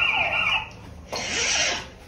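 A high-pitched shriek lasting about half a second, then a short, breathy, hissing burst about a second in.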